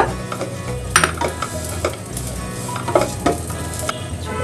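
Rice sizzling as it fries in ghee in a stainless steel pot, stirred with a spatula that scrapes and clicks against the pot a few times.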